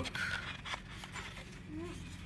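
Soft scrapes and a few light clicks of a leather wallet being lifted out of its cardboard presentation box.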